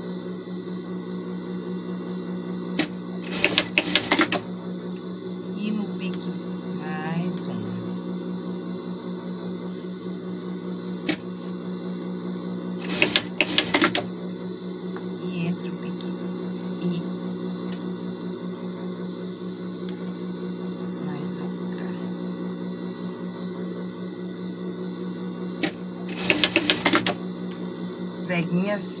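Industrial straight-stitch sewing machine stitching down pleats in a denim ruffle in three short bursts of about a second each: one near the start, one in the middle and one near the end. A steady low hum runs throughout.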